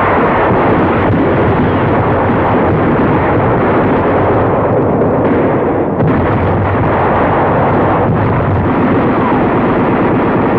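Naval gunfire and shell explosions merging into one loud, unbroken din of bombardment on an old 1940s newsreel soundtrack. It starts abruptly at the opening.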